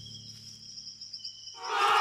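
High, evenly pulsing insect chirring over a quiet, low film-score hum, then a loud swell of music about one and a half seconds in.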